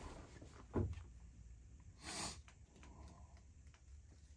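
Quiet handling sounds of a playing card being folded up small between the fingers: faint small clicks and rustles, a soft bump just under a second in, and a short breath out through the nose about two seconds in.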